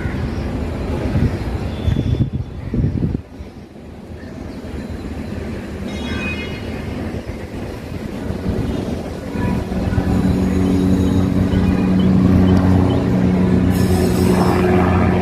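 Helicopter flying overhead: a steady engine and rotor hum that grows louder through the second half, with several steady pitched tones. Before it, a loud low rumble cuts off about three seconds in.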